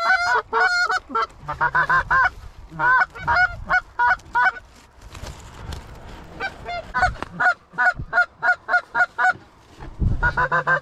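Geese honking: many short, repeated calls, often overlapping, with a lull about halfway through before the honking picks up again.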